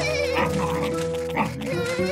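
Cartoon background music with a cartoon puppy's wavering, whining vocal sound near the start and again near the end.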